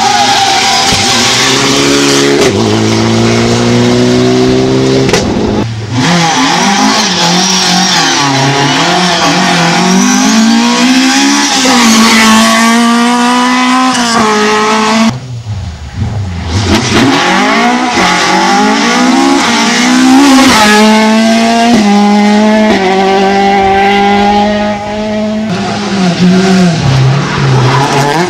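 Rally cars driven flat out, one after another: engines revving hard, their pitch climbing through each gear and dropping at the gear changes.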